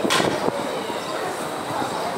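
Double-decker coach standing at the platform with its diesel engine idling in a steady rumble, and a brief hiss just after the start.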